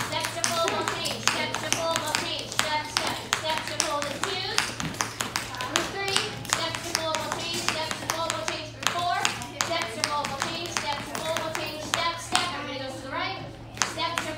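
Hand claps, many and irregular, over the chatter of children's and adults' voices.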